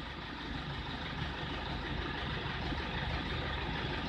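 Toyota Fortuner's turbo-diesel engine idling steadily with a low, even rumble.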